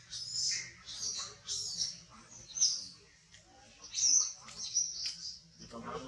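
Birds chirping: short, high calls repeated several times a second, with two louder chirps near the middle.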